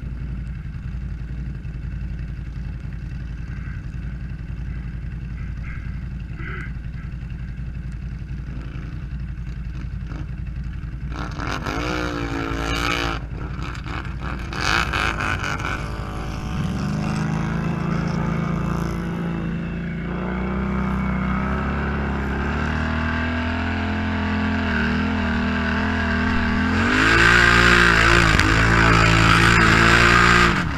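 ATV engines idling with a low steady rumble, then revving in rising and falling surges from about eleven seconds in as a quad is driven out through the water hole. A steadier, higher engine note follows, and the loudest revving comes near the end.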